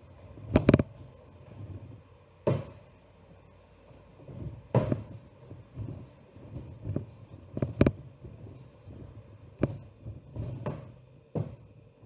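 Rolling pin working pastry on a stainless steel worktop: a low, uneven rolling rumble broken every second or two by sharp knocks of the pin against the metal surface.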